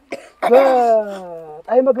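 A man's voice: a short throat-clearing sound, then one long drawn-out vocal sound falling steadily in pitch for about a second, then speech resumes near the end.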